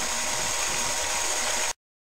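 Steady hiss and room tone of the recording with no speech, cutting off abruptly to digital silence near the end as the audio ends.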